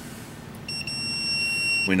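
Digital multimeter's continuity buzzer sounding one steady high-pitched beep, starting under a second in with a brief flicker, as the probe touches the clip inside the charger's plug handle. The buzz means the small wire through the handle has continuity, so that wire is good.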